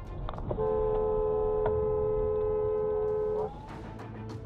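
Car horn held in one long steady blast for about three seconds, two tones sounding together, then cut off sharply.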